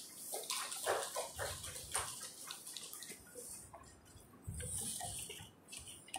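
Light, scattered applause from a small audience, thinning out over the first few seconds, followed by faint shuffling.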